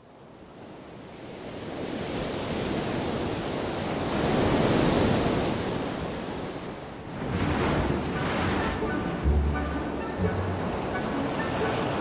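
Ocean surf, waves breaking and washing, fading in from near silence and swelling to a peak near the middle, with a second surge about seven seconds in. Low musical notes come in over the surf in the last few seconds.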